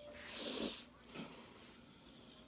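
A person's long breathy sigh that swells and fades within the first second, followed by a short puff of breath.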